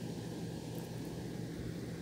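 A steady low hum with an even hiss underneath, unchanging throughout.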